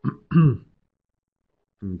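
A man clearing his throat in two short bursts, the second louder, followed by a pause; his speech resumes near the end.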